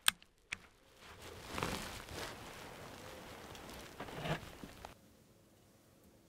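A hunter moving with his rifle in a hunting blind: two sharp clicks about half a second apart at the start, then soft rustling and shuffling twice.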